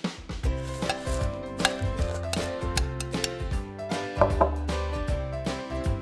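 Light taps and scrapes of a tiny metal spoon stirring crumbs in a small glass bowl, heard over background music.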